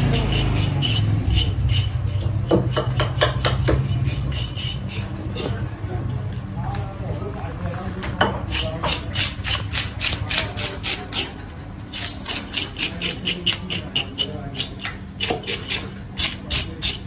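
A large whole fish being scaled with a blade on a plastic cutting board: quick repeated scraping strokes, about four a second, with a steady low hum underneath.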